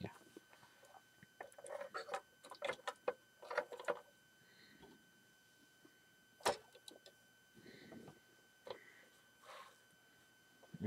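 Lego plastic pieces clicking and rattling faintly as the built figures are handled and set in place, with one sharper click about six and a half seconds in.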